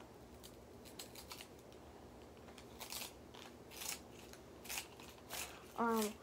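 A pencil being twisted in a small hand-held sharpener: short rasping strokes that come irregularly, about six in all, over a faint steady hum. A voice starts just before the end.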